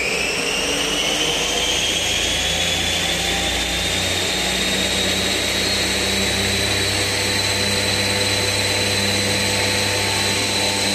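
Spindle of an ALTCK65DY CNC turning and milling machine spinning its chuck up to 4000 rpm. A high whine keeps rising slowly in pitch as the spindle nears full speed, then holds steady from about halfway on, over a steady low hum.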